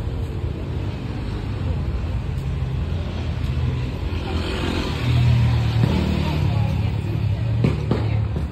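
Street traffic: a motor vehicle's engine running nearby as a steady low hum, growing louder about five seconds in, with a few sharp clicks near the end.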